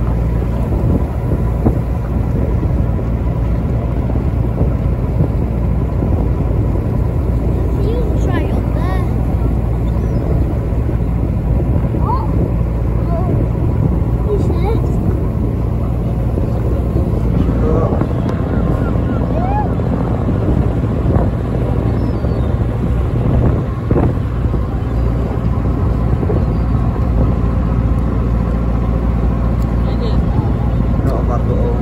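A passenger boat's engine running steadily, a constant low hum under the open-air noise of the trip.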